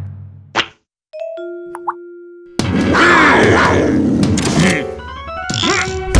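Cartoon soundtrack: the music dies away, a single sharp comic hit sounds about half a second in, then after a short silence a few thin tonal sound effects, and busy cartoon music with effects comes in loudly about two and a half seconds in.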